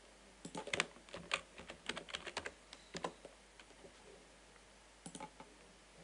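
Typing on a computer keyboard: a quick run of keystrokes for about three seconds as a search word is entered, then a couple more clicks about five seconds in.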